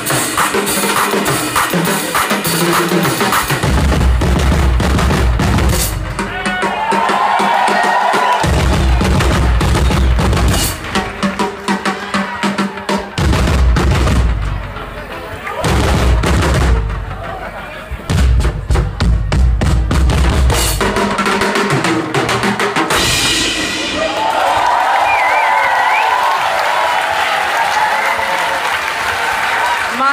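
Live band playing amplified music with a full drum kit to the fore, bass drum and snare clear; the heavy bass drops out and comes back several times.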